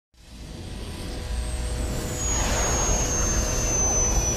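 Cartoon aircraft engine sound effect: a low rumble that swells up over the first second or so, with a high whine slowly falling in pitch throughout.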